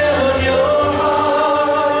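Worship music: voices singing a slow song in long held notes.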